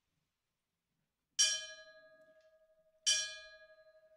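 A small metal bell struck twice, about a second and a half in and again near three seconds, each strike ringing on with a steady lingering tone that fades slowly.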